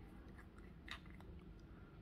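Near silence: room tone with a few faint small clicks, the clearest just under a second in.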